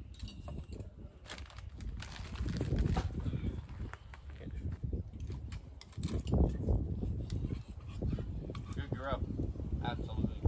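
Wind gusting over the microphone: an uneven low rumble that swells and drops, loudest in the second half, with a few faint clicks.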